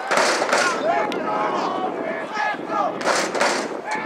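Overlapping shouts and calls from players, coaches and spectators at a football game, with two short rushes of noise, one just after the start and one about three seconds in.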